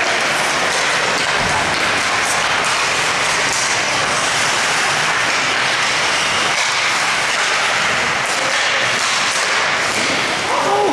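Steady, even crowd noise in an ice hockey rink, with no single event standing out.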